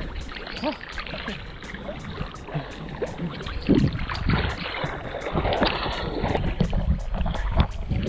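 Choppy seawater sloshing and splashing around a camera held right at the water's surface by a swimmer, with louder splashes of swimming strokes about halfway through.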